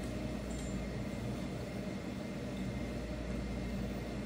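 Room tone: a steady low hum and hiss with no speech.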